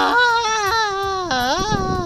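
A high-pitched wailing voice, crying-like, held in long drawn-out notes whose pitch dips and rises, with a short break about a second and a half in.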